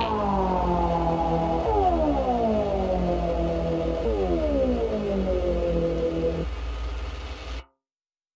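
Closing bars of a downtempo glitch electronic track: a synthesizer chord slides downward in pitch three times over a steady low bass. The music then cuts off sharply near the end.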